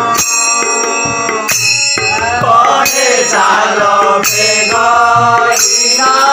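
Odia village devotional song: men singing over sustained harmonium chords, with a two-headed barrel drum and small brass hand cymbals (gini) struck in time. The sung line comes in strongly about two seconds in.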